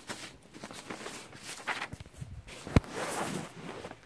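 Handling noise of a phone being set down and settled on a bed: rustling of fabric and bedding, with one sharp knock a little under three seconds in, the loudest sound.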